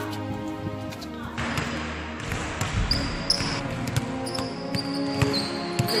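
Background music, then from about a second and a half in a basketball being dribbled on a hardwood gym floor: repeated sharp bounces, with high-pitched sneaker squeaks from about halfway through.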